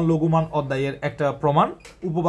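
A man talking in Bengali, with a short click near the end.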